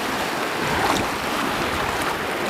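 Small waves washing over shallow, sandy-bottomed water, a steady wash that swells slightly about a second in.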